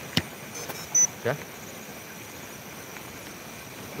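A sharp click and, about a second in, a short high beep from handling a phone gimbal while it is being set up, over the steady high chirring of night insects such as crickets.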